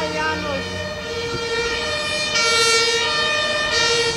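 An emergency vehicle's two-tone siren sounding loudly on a city street, switching back and forth between two pitches.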